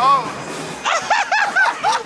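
A person laughing hard in a quick run of high-pitched "ha" bursts, about five a second, starting about a second in.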